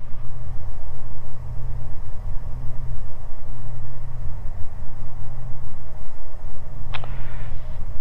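The two six-cylinder Continental IO-550 engines and propellers of a Beechcraft G58 Baron droning steadily on final approach, heard inside the cockpit. A short click sounds about seven seconds in.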